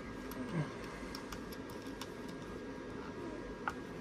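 Faint scattered ticks and light clicks of hands handling a battery tester and a lithium cell on a workbench, with one clearer click near the end, over a faint steady electronic whine.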